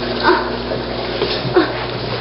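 Dog barking: several short barks about half a second apart, each dropping in pitch.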